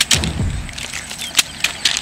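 A few sharp, irregularly spaced slaps and taps: bare hands and feet landing on paper sheets laid on an asphalt road, with a low scuffing between them.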